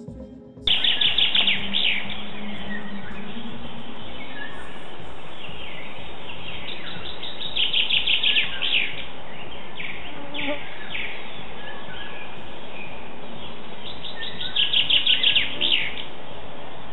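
Music cuts off under a second in, giving way to outdoor sound: a songbird singing three bursts of rapid trilled song, each one to two seconds long and several seconds apart, over a steady background hiss.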